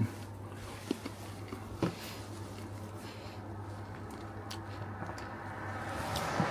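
Quiet room tone with a steady low hum, broken by two or three faint short clicks or rustles in the first two seconds.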